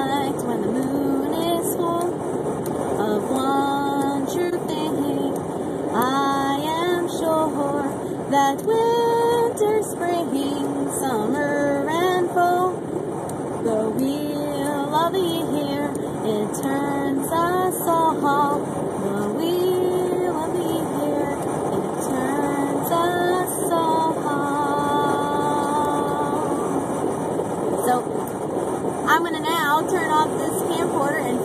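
A woman singing a simple chant-like melody unaccompanied, with held and gliding notes, over the steady road noise inside a moving car.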